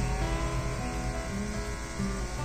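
Background music with held, slowly changing notes over a steady low rumble.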